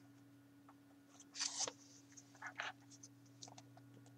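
A gloved hand squeezing and mixing minced beef, chicken and onion in a glass bowl: faint wet squishing, with two louder squelches about one and a half and two and a half seconds in, over a low steady hum.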